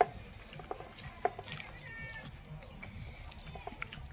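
Metal utensils clink sharply on the floor, the loudest clink about a second in, with another right at the start and a few lighter ticks. A brief high animal call sounds about halfway through.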